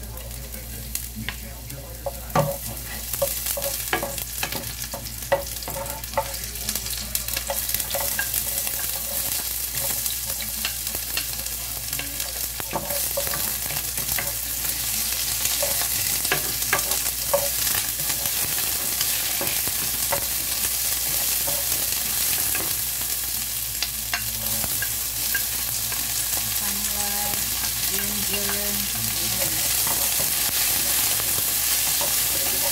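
Chopped onion frying in oil in a nonstick pan, the sizzle building up after the first few seconds, with a wooden spoon stirring and knocking against the pan.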